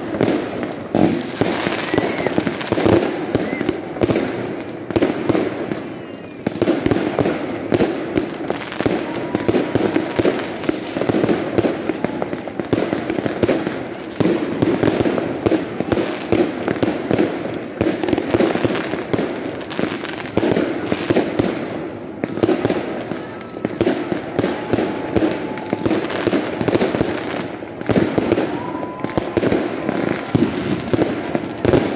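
Aerial fireworks bursting in a continuous, dense barrage of bangs and crackles, easing briefly about six seconds in, with a few short whistles among the bursts.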